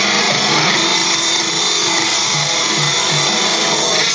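Loud, heavily distorted electric guitar music played through the VOX JamVOX amp-modelling software, a dense gritty wall of sound over a few held low notes.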